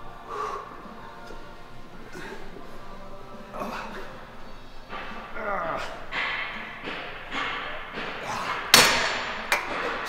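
A man straining through the last hard reps of a cable rope triceps pushdown taken close to failure: effortful grunts and forced breaths that grow louder through the set. A loud short burst of noise comes near the end.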